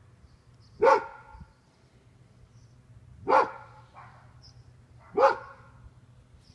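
A dog barking three times, single barks about two seconds apart.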